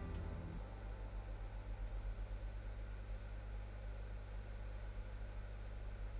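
A steady low electrical hum with a faint hiss: background room tone of the recording setup, with no other sound.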